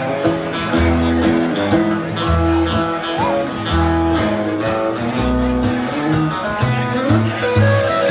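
Live band playing an instrumental break, an orange hollow-body electric guitar taking the lead over a steady bass line and drums keeping time.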